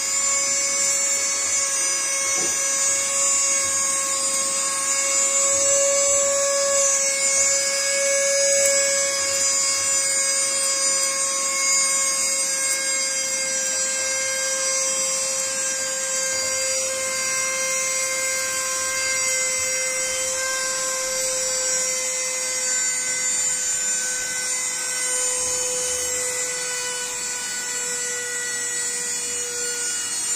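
Cordless handheld mini vacuum cleaner's small electric motor running with a loud, dental-drill-like whine as it sucks up loose ballast. Its pitch sags slowly through the run because the motor is slowing on a battery that was not charged before use.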